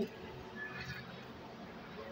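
Quiet squishing of a bare hand mixing and squeezing raw minced beef with chopped onion and spices against a steel pan.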